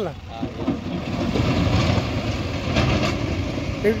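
Heavy diesel engine of a Mahindra EarthMaster backhoe loader running steadily while it works.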